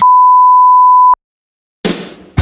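A loud, steady electronic beep on a single pure pitch, just over a second long, cut off abruptly and followed by dead silence. Near the end a sudden loud sound cuts in.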